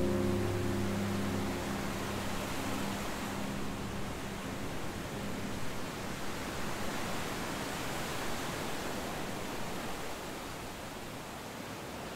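A held chord of background music fades out over the first two or three seconds, leaving a steady rushing noise with slight swells, like surf or wind ambience.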